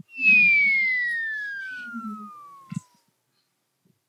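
A descending whistle that glides smoothly from high to low over about three seconds while fading, like a falling-bomb whistle, with a short click near the end.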